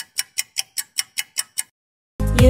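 Quiz thinking-time sound effect: a clock-like tick repeated about ten times at five ticks a second, stopping shortly before the answer is revealed.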